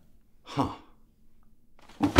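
A man's single short, breathy "huh", an exhaled sound of surprised realization that falls in pitch, followed by quiet room tone.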